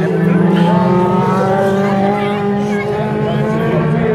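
Engines of several autocross race cars running and revving on a dirt track, their pitches drifting slowly up and down and overlapping.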